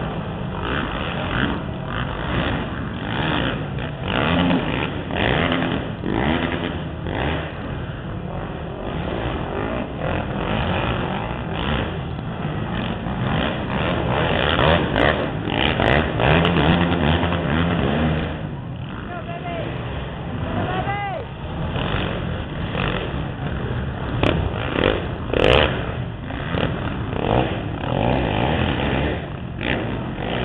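Racing quad (ATV) engines running and revving as several quads go round a dirt arenacross track, mixed with indistinct voices.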